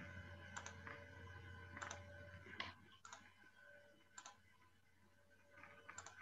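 Faint clicks at a computer, about six sharp clicks spread over a few seconds, as a screen share is being started. Under them is a steady low electrical hum with a faint whine from a just-opened microphone.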